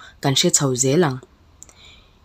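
A man's voice narrating in Mizo for about the first second, then a short pause holding a few faint clicks.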